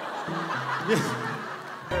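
People laughing and snickering over light background music.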